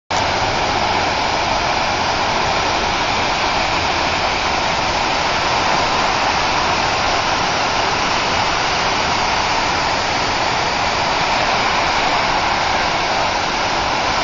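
Lucky Peak Dam's outlet release, the 'rooster tail', shooting a huge jet of water into the air that falls back as spray on the river: a loud, steady rushing of water that never lets up.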